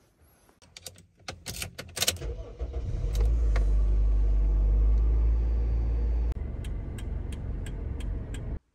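Keys clicking and jangling in the ignition, then a Toyota Probox's engine starts about two seconds in and settles into a steady low idle. Later the rumble drops a little and a run of evenly spaced ticks, about three a second, sounds over it.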